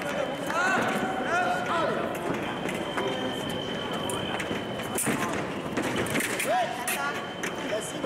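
Echoing shouts of fencers in a large sports hall, with sharp clicks of footwork and blades, and a steady electronic beep from a fencing scoring machine running for about two seconds from near the three-second mark.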